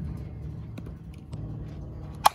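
Steady low rumble of outdoor field ambience on the microphone, with a few faint ticks in the middle.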